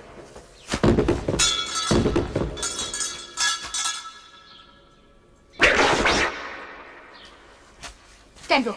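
Dubbed fight sound effects: a couple of sharp impacts, then a metallic ring that fades away over about two seconds, and another sharp hit or whoosh about six seconds in.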